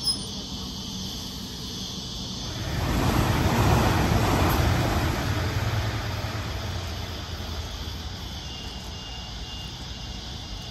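Sydney Trains Waratah Series 2 electric train passing close and running away down the line: the noise swells about two and a half seconds in, peaks briefly, then fades slowly into the distance. A short click comes right at the start.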